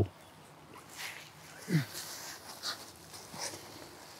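A quiet pause with faint rustles and light knocks from the prone shooter settling his cheek against the rifle. About halfway through comes one brief low vocal sound that drops in pitch.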